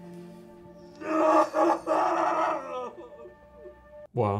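A man wailing in grief, a loud cry broken into a few sobbing surges that trail off, over soft sustained score music that fades out as the cry begins.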